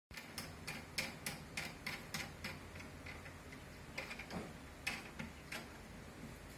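A run of sharp, light clicks, about three a second for the first two and a half seconds, then a few scattered clicks, from small hard parts being handled and fitted during assembly.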